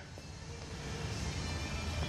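Faint steady background sound: a low hum and hiss with a few weak steady tones, growing slightly louder, with no distinct event.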